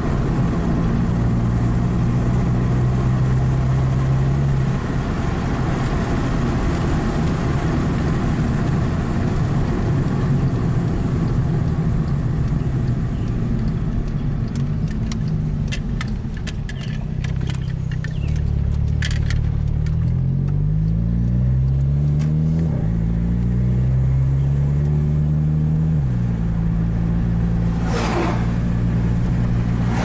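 Volkswagen 2-liter four-cylinder engine and road noise heard inside the cabin while driving. The engine note is steady at first, then rises in pitch twice past halfway as the car accelerates through the gears. A few light clicks come in the middle and a brief whoosh near the end.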